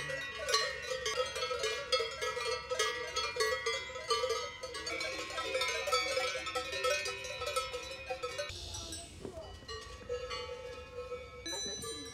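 Many cowbells clanking and ringing irregularly as a herd of cows walks out to pasture. The ringing grows sparser and quieter in the last few seconds.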